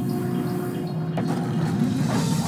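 DVD menu soundtrack under an animated sneak-peeks screen: a steady low rumbling drone with two short swishes, about a second in and at the end, as title logos appear.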